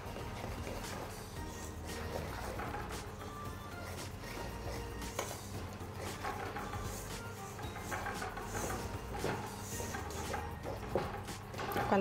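Quiet background music, with a wire whisk faintly clicking and scraping against a stainless steel bowl as flour is beaten into a thin batter.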